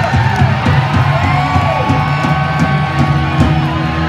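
Live rock band playing loud and distorted: electric guitars with long held notes sliding up and down over bass and drums.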